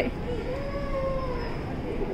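A child's high voice held in one long drawn-out note for about a second, rising slightly and then falling away, over a steady low background hum.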